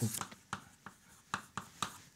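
Chalk writing on a blackboard: about five short, sharp taps and scrapes of the chalk stick, a fraction of a second apart.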